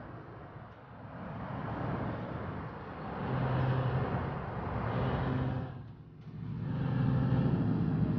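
City traffic ambience: a steady rumble of road vehicles with a low engine hum that swells and fades, dipping briefly about six seconds in.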